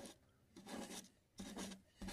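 A paintbrush's bristles scratching across a painted surface in two short, faint strokes, the first a little over half a second in and the second about a second and a half in.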